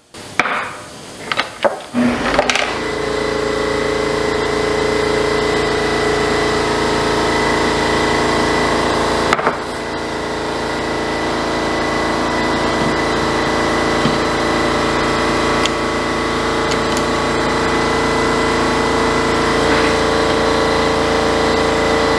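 A few light metal clinks of tools being handled, then a loud, steady machine drone with a constant hum that sets in a couple of seconds in and runs on without change.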